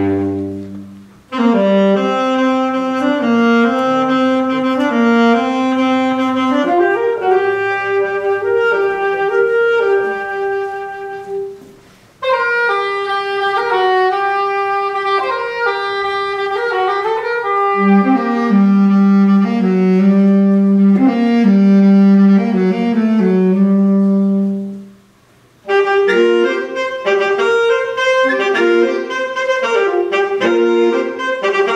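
Saxophone quartet of soprano, alto, tenor and baritone saxophones playing a reel in several parts, in phrases broken by short pauses about a second in, around twelve seconds in and a few seconds before the end. A low note is held for several seconds in the middle under the moving upper lines.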